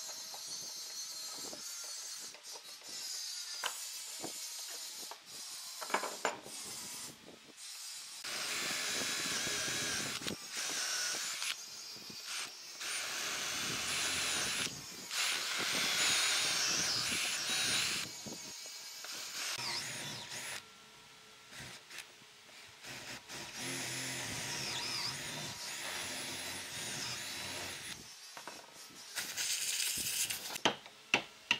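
Cordless drill boring into a round wooden log, running loudest through the middle stretch, with a hand chisel scraping and paring the wood before and after, and sharp clicks near the end.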